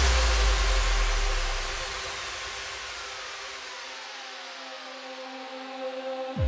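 Trance track breakdown: a white-noise wash and a deep bass fade away over about four seconds, while a synth sweep glides slowly downward over quiet sustained pad notes.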